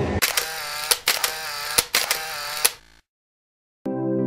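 Editing transition sound effect: a bright, processed swoosh punctuated by about six sharp clicks over two and a half seconds. It cuts off abruptly into dead silence.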